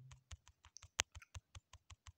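Light fingertip taps on a phone's touchscreen, pressing the undo button over and over to clear pen annotations. There are about a dozen quick taps at roughly six a second, with one louder tap about halfway through.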